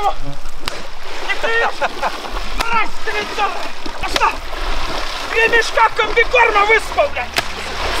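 A man yelling wordlessly, in high-pitched bursts, while splashing about in shallow water and whipping it with a long pole; water splashes throughout.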